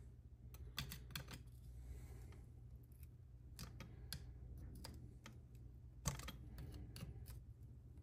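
Faint, irregular small metallic clicks and taps as a screwdriver pries at the joint of a Laycock de Normanville D-type overdrive casing that will not yet split apart.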